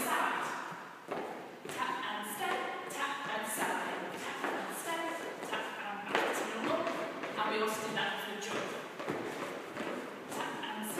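Shoes stepping, tapping and thudding on a wooden dance floor in irregular Charleston footwork, with a person's voice heard throughout.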